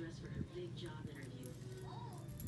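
A few light knocks and rattles from a plastic clothes hanger as a cat bats and grabs at it, over a steady low hum.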